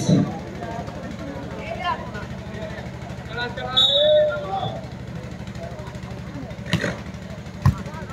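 Volleyball match ambience: scattered shouts and calls over a steady low hum, with two sharp thumps near the end, the last a volleyball struck on the serve.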